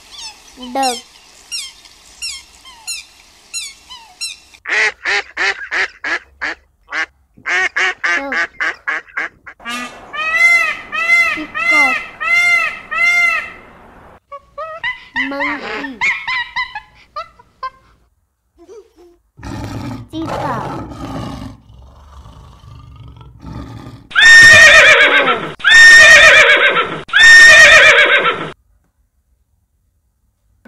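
A run of different animal calls in turn: high, thin peeps and quick repeated honks from a Canada goose family with goslings, then arching, pitched calls and a Barbary macaque's calls through the middle, and three loud calls near the end.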